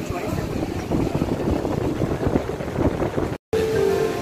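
Busy street noise of crowd chatter and vehicle engines. It cuts off abruptly about three and a half seconds in, and music with held notes follows.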